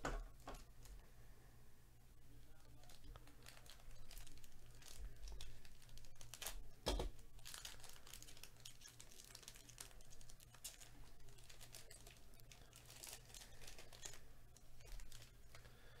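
Foil wrapper of a 2022 Topps Museum Collection baseball card pack being torn open and crinkled by hand: faint, scattered crinkles and small tears, with one sharper rip about seven seconds in.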